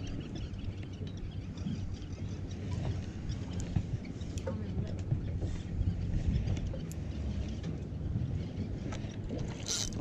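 Steady low rumble of a small boat on the water, with wind and water noise and a few small clicks. A short splash comes near the end as the hooked bluefish thrashes at the surface.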